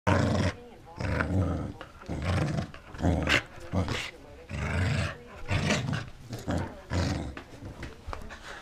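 Pembroke Welsh Corgi play-growling while tugging a rope toy, in repeated short rough bursts, roughly one a second or a little faster.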